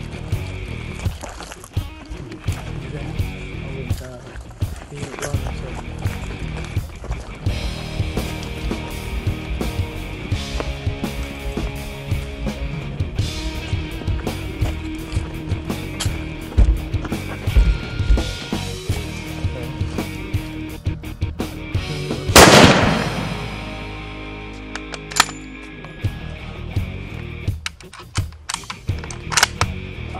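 Background music with a steady beat, broken about three-quarters of the way through by a single loud rifle shot that rings on for about a second.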